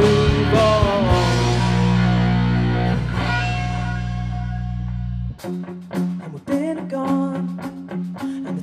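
Rock band playing an instrumental passage: a chord hit and held, ringing out for about four seconds. Then the bass suddenly drops out and an electric guitar plays a choppy, staccato part over the drums.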